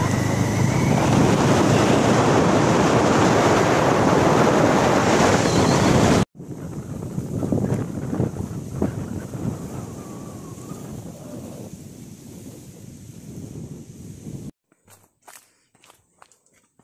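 Wind buffeting the microphone, loud and steady for about six seconds, then cut off abruptly and continuing more quietly. A few seconds before the end it drops away, leaving a few faint clicks.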